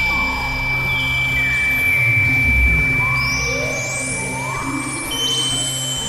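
Experimental synthesizer drone music: a low steady drone under a held high tone that shifts to a higher one near the end, with short pitch glides sweeping through the upper range.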